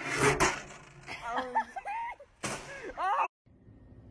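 Two loud bangs right at the start, then a voice calling out in short rising-and-falling cries, in two bursts. The sound cuts off suddenly shortly before the end, leaving a faint hum.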